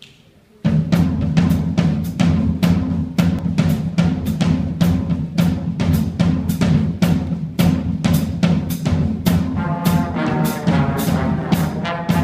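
High school jazz band starting a tune on its drum kit: after a brief quiet, the drums come in abruptly about half a second in with a steady, rapid, even beat over a low ringing bass. The horns join near the end.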